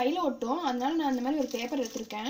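A woman's voice talking steadily, in words the transcript did not catch.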